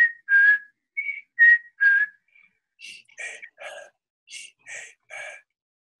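A man whispering a series of vowels. Each short whisper carries a whistle-like pitch, his second formant, and the pitch steps down over three vowels, then the pattern repeats. A run of fainter, breathier whispers follows.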